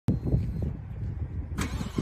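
Cold start of a 2022 Ford Mustang Shelby GT500's supercharged 5.2-litre V8: a low, uneven rumble, then about a second and a half in the starter begins cranking, just before the engine catches.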